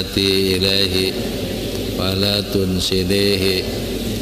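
A man chanting an Arabic supplication (doa) in long, held phrases, with a steady low hum underneath.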